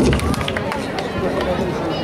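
Audience chatter: many people talking at once, indistinctly, with a low rumble near the start.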